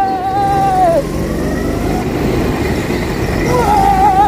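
Go-kart driven hard with its engine giving a steady low rumble, and the tyres squealing through corners: a wavering squeal that drops in pitch and stops about a second in, then starts again near the end.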